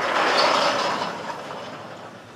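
A sliding classroom chalkboard panel being moved along its track: a rattling mechanical rumble that starts at once and fades over about a second and a half.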